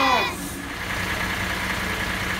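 Children's voices trail off, then a refuse collection lorry's diesel engine idles steadily: a low hum with a faint, even whine above it.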